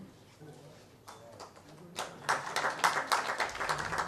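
Audience applauding: a few scattered claps about a second in, swelling to full, dense applause about two seconds in.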